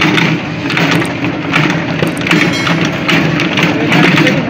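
Small petrol engine running a sardai grinding machine, its rotating pestle churning and grinding thick nut-and-seed paste around a large bowl. A steady engine hum lies under a rasping grind that swells and fades about once a second.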